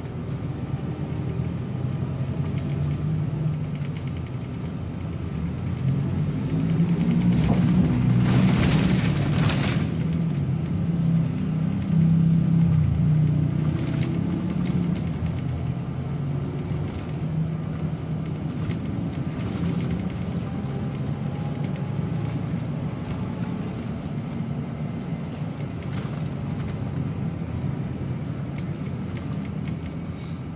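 City bus engine running, heard from inside the cabin while the bus drives in traffic, its low drone growing louder for several seconds a little way in as it pulls harder, with a hiss lasting about two seconds around the loudest part.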